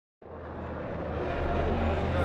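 A steady low rumbling hum under a haze of background noise. It starts abruptly a fraction of a second in and grows slightly louder.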